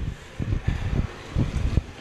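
Wind buffeting a handheld microphone outdoors: irregular low rumbles rising and falling in gusts.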